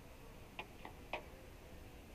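Three short, faint clicks about a quarter second apart, the third the loudest, over quiet outdoor background.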